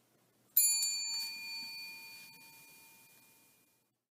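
A chrome desk service bell struck once about half a second in, giving a bright ding whose ringing fades away over about three seconds.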